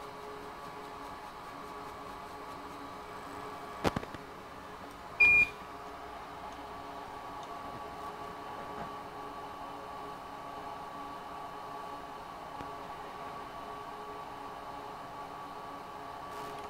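Steady fan hum from repair-bench equipment, with a sharp click about four seconds in and a single short electronic beep about a second later.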